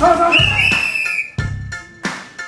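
A single whistle blast lasting just under a second, starting about a third of a second in, as the referee halts the exchange between the two fighters. Background music with a steady drum beat runs underneath, with a short shout just before the whistle.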